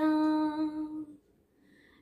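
A woman's voice singing one long held final note, unaccompanied, fading out a little over a second in.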